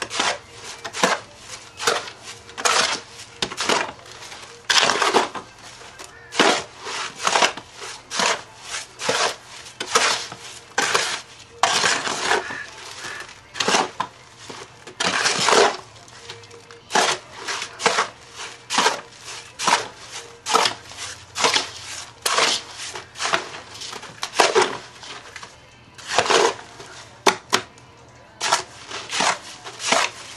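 A spade chopping and scraping through a stiff, still fairly dry mix of clay and sand in a wheelbarrow, breaking up lumps before water is added. The strokes are gritty and come about one or two a second.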